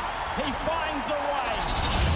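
Tennis spectators calling out and cheering: a few voices rise and fall in pitch over a low rumble, with a couple of faint sharp hits.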